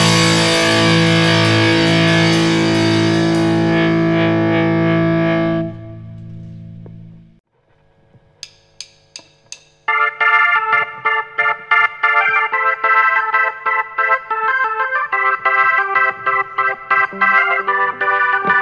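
A rock band's held final chord of electric guitars, bass and drums rings, then drops away about six seconds in and fades out. After a short pause, a few single high keyboard notes sound, and from about ten seconds a Roland Juno keyboard on an organ-like sound plays a rhythmic run of repeated chords, opening the next song.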